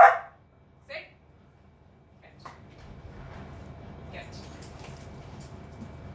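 A dog barks once, loud and short, then gives a second, quieter bark about a second later.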